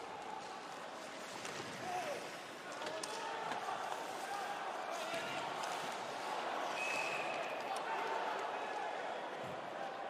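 Ice hockey arena ambience during live play: steady crowd noise with scattered clacks of sticks and puck, and skates on the ice. The crowd gets a little louder about three seconds in.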